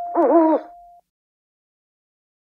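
Owl hoot in two quick dipping notes, closing an intro jingle, over a held tone that cuts off about a second in; then dead silence.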